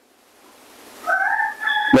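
Rooster crowing: one drawn-out call that starts about halfway through, rises briefly and then holds steady for nearly a second.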